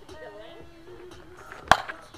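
A bat hitting a pitched ball once, near the end: a single sharp crack with a brief ring, over background music with singing.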